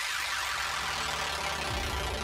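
Steady in-flight cabin noise of a Bell 412 twin-turbine helicopter: an even drone of engines and rotor heard from inside the cabin.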